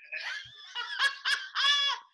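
A woman laughing in a run of short, high-pitched bursts that grow louder toward the end.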